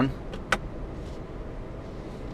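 A single sharp click about half a second in, as the park-assist button on a Jeep Cherokee's centre console is pressed, over the low steady hum of the car's cabin.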